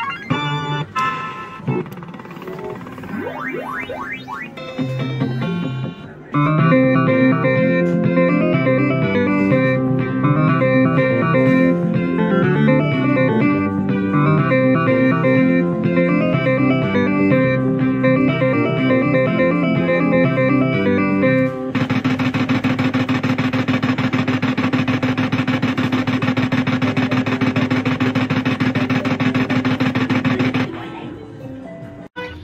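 Fruit machine sounding its jackpot win for three sevens on the win line: after some short electronic effects it plays a looping electronic tune with a steady beat. About two-thirds of the way in, this switches to a dense, steady buzzing tone while the £6 jackpot counts into the bank.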